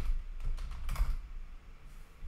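A few separate keystrokes on a computer keyboard, the loudest about a second in.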